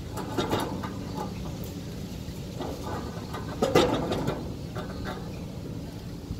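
A trailer hub and brake rotor assembly being slid onto the axle spindle: short metal scrapes and knocks, with the loudest clunk a little past halfway, over a steady low background hum.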